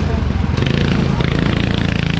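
Go-kart engine running close by as a kart pulls out of the pit lane, a fast, even buzz of firing strokes.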